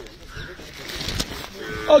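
A cow mooing: one steady, level call near the end.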